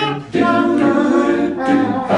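An a cappella vocal group singing unaccompanied in close harmony, with a short break between phrases just after the start.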